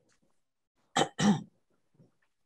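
A woman clearing her throat, two short rasps in quick succession about a second in.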